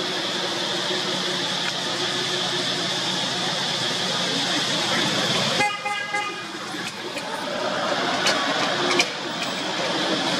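Steady outdoor traffic noise with a short vehicle horn toot a little past the middle, followed by a couple of sharp clicks near the end.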